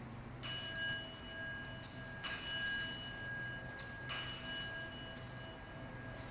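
Altar bells rung in several shakes through the elevation of the chalice after the consecration, each shake a bright jangle, with a clear ringing tone carrying on between them.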